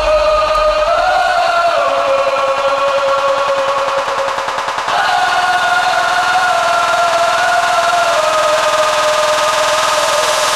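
Jumpstyle track in a breakdown: the kick drum has dropped out and a long, held lead note carries the music, sliding between pitches. The note brightens about five seconds in.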